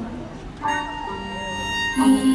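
Live band accompaniment in a pause between sung lines: soft low sustained chords, then a steady held instrumental note entering about half a second in.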